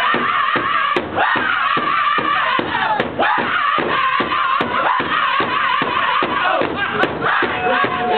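Powwow drum group singing over a large shared hand drum, the drummers striking it together in a steady, even beat. The voices are high-pitched, with phrases that slide downward.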